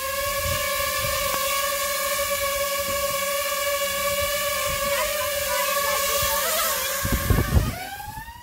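DJI FPV drone hovering close by, its four propeller motors giving a steady high-pitched buzzing whine. Near the end, a loud rush of propeller downwash buffets the microphone. Then the whine dips in pitch and starts to fade as the drone climbs away.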